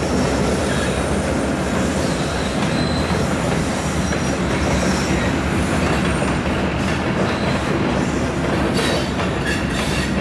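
A freight train's covered hopper cars rolling across a steel girder bridge: a steady, loud rumble with the clatter of wheels over the rails and a few faint high wheel squeals. Sharper clacks come near the end.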